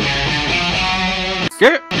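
Electric guitar playing a riff of short, quickly changing notes. About one and a half seconds in it cuts off suddenly for a brief, loud voice call that rises in pitch. The guitar starts again at the very end.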